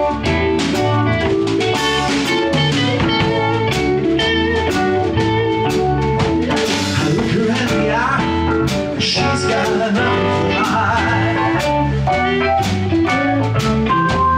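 Live band playing an instrumental passage of a blues-rock song: a drum kit keeps a steady beat under sustained keyboard chords and melody notes.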